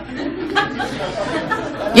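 Indistinct, low murmur of voices, like quiet chatter in the room.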